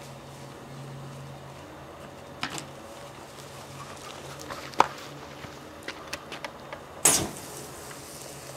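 Wood fire in a metal fire basket crackling with scattered sharp pops, then one loud burst about seven seconds in as the fire flares and throws up sparks.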